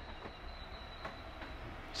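Quiet pause: faint steady background noise with a thin, steady high-pitched whine.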